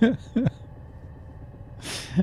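A man's short laughs trailing off in the first half-second over a faint steady low hum, then a short sharp breath near the end.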